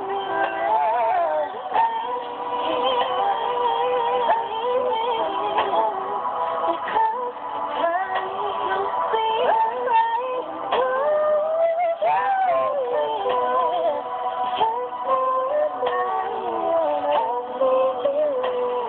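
Playback of a recorded song: a woman singing long, wavering vocal runs over a backing track, played through computer speakers and picked up by a phone.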